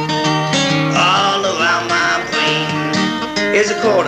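Acoustic guitar played in a blues style, a low bass note repeating steadily under higher picked notes.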